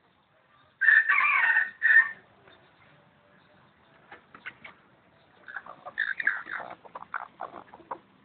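A rooster crows once, about a second in, a single call of just over a second that is the loudest thing heard. From about five and a half seconds a chicken gives a run of short, broken clucks and squawks.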